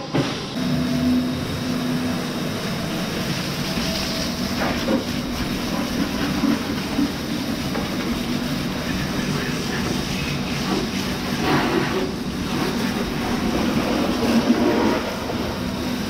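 Water from a hand-held hose spray nozzle hitting the arm and housing of a Lely robotic milker, a steady spray at a constant level while the robot is hosed down for cleaning.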